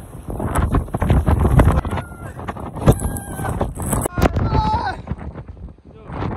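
Strong gusting wind blowing across an iPhone's microphone, a rumbling buffeting that swells and drops, loudest in the first two seconds and again about three seconds in.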